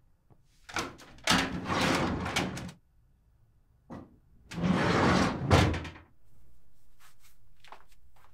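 Top drawer of a metal filing cabinet rolling open on its runners, then pushed shut about halfway through, ending in a sharp bang. After it, a quieter rustle of a folded plastic sheet being handled.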